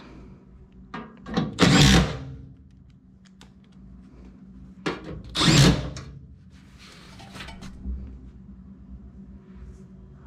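Cordless power driver running in two short bursts, about two seconds in and again past the middle, driving screws to fasten the blower assembly back into the air handler. A few light knocks of handling come between.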